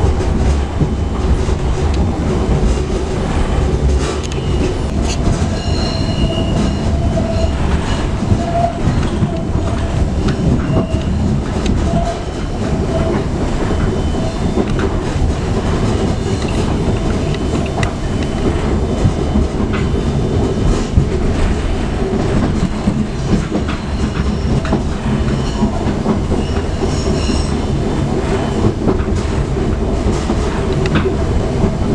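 Running noise inside a moving Budapest HÉV suburban train carriage: a steady low rumble with clicks and rattle from the wheels over the track. Faint high wheel squeals come in about six seconds in and again near the end.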